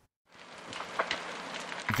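Forest wildfire burning: a crackling hiss that fades in shortly after the start, with a few sharper snaps.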